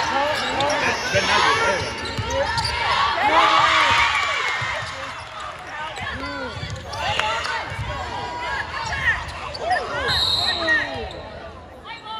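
Basketball game play on an indoor court: the ball bouncing on the floor amid players' and spectators' shouts and calls. About ten seconds in, a short high steady tone sounds, a referee's whistle stopping play, and the noise then dies down.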